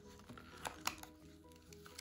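Faint background music with steady held notes, and a pair of sharp clicks under a second in from plastic coin packaging being handled as a coin is worked free of it.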